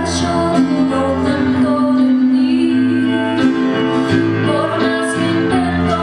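Live band playing amplified music, with electric guitar, bass guitar, keyboard and drums, and a woman singing into a microphone.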